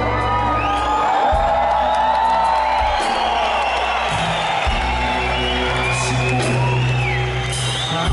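Live blues-rock band playing an instrumental passage: electric guitar bending and sliding notes over held bass notes and drums, with a few whoops from the audience.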